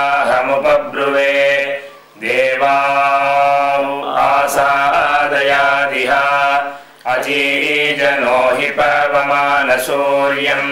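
A man chanting Sanskrit Vedic mantras solo on a few steady, held pitches. The chant breaks briefly for breath about two seconds in and again about seven seconds in.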